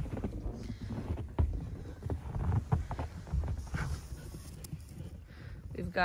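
Footsteps in fresh snow, irregular soft impacts, over a low rumble from wind or handling on the phone microphone.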